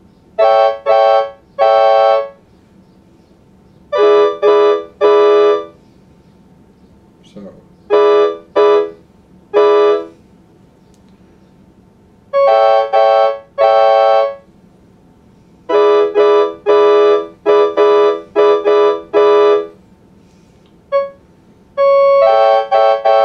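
Electronic keyboard chords played on a MIDI keyboard through a synthesized organ/piano-type voice. The chords are held briefly and come in groups of about three with pauses between, and the chord changes from group to group. A faster run of short chords comes near the end.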